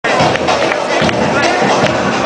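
Loud music with percussive hits and a voice over it, played over a club's speakers.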